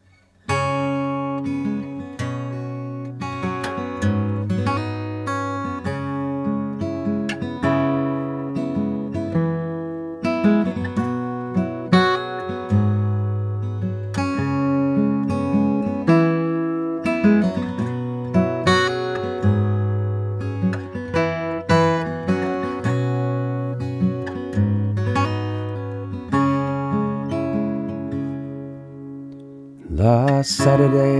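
Solo acoustic guitar, fingerpicked, playing the instrumental introduction of a folk song: a plucked melody over ringing bass notes, beginning about half a second in and thinning out near the end.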